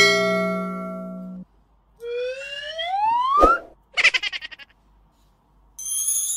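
A string of cartoon sound effects: a bright ringing chime that fades away over about a second and a half, then a rising whistle-like glide that ends in a click, then a brief rapid rattle. Music starts right at the end.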